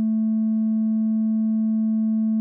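Bitwig FM-4 synthesizer holding a steady sine-wave note on A at 220 Hz, with faint higher overtones above it.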